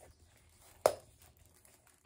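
A single sharp click a little under a second in, with a few faint ticks and handling rustle around it: the metal press-stud snaps of a vegan leather snap tray being worked by hand.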